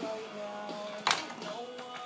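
Background music with singing plays steadily, and a sharp knock comes about a second in as something is knocked over while the handheld iPod is being propped up.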